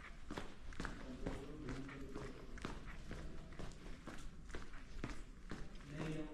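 Footsteps of a person walking along a dusty salt-mine tunnel floor, an even pace of about two steps a second.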